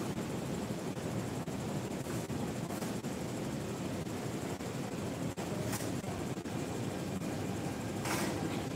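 Steady low rumble and hiss of a metro station platform, with no distinct event standing out.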